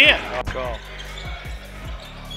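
A basketball being dribbled on a hardwood gym floor: a handful of dull bounces at uneven spacing, the sharpest about half a second in, under a faint steady hum and hall noise.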